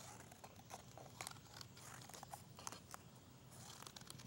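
Scissors snipping slits into a folded paper postcard: several faint, short snips at irregular intervals.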